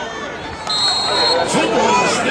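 A referee's whistle gives one short, steady, shrill blast a third of the way in, blowing the play dead after the ball carrier is tackled. Crowd voices and sideline chatter run underneath.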